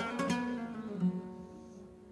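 Flamenco guitar playing a few plucked notes between sung phrases, each note ringing and dying away, the music growing faint near the end.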